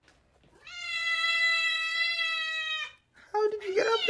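A tabby cat yowls: one long, steady, drawn-out meow lasting about two seconds. It is followed near the end by shorter calls whose pitch wavers.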